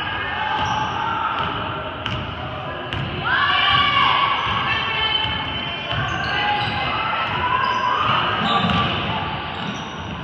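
Basketball dribbled on a gym's hardwood floor, with players and spectators calling out in the echoing hall; one voice shouts loudly about three seconds in.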